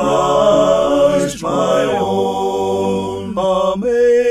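A cappella voices singing a hymn in harmony, with no instruments. They hold long sustained chords that change a few times, moving from the end of a verse into the refrain.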